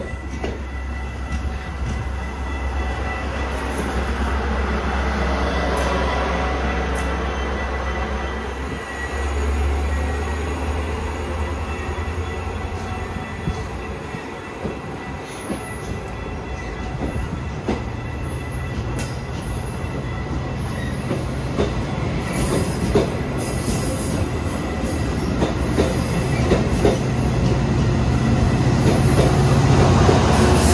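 Metra commuter train of stainless-steel bi-level cars rolling along a station platform, with a steady low diesel drone. A thin high wheel squeal runs for the first dozen seconds or so. In the second half the locomotive's engine drone grows steadily louder as it nears.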